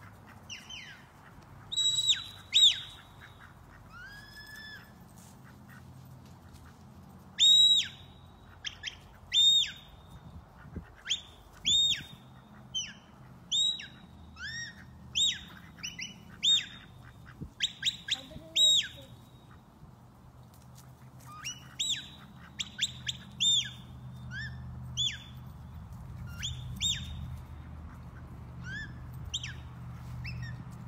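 Sheepdog handler's whistle commands: many short, sharp, high whistle notes, most of them bending down in pitch at the end, given in irregular runs. Each whistle is a command to the herding dogs moving a flock of ducks.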